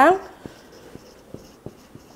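Marker pen writing on a whiteboard: faint strokes with a few light clicks and taps.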